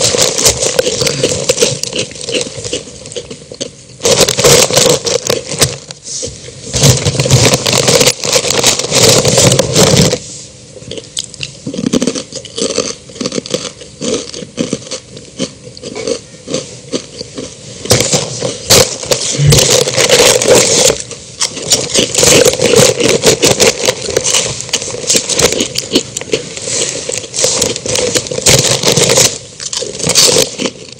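Loud crackling and scraping noise full of clicks, in bursts of a few seconds with a quieter stretch in the middle, from the soundtrack of a recorded comedy sketch played over the hall's sound system.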